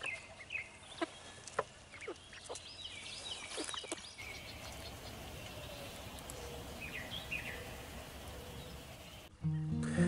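Chickens in a run calling in short falling notes, with a few sharp calls standing out. About four seconds in the sound cuts to a quieter outdoor background with a couple of bird chirps, and music starts near the end.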